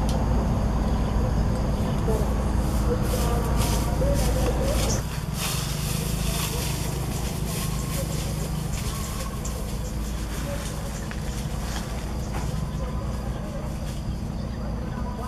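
Wind rumbling on the microphone, with grass rustling and swishing as someone walks through tall vegetation. The background changes abruptly about five seconds in.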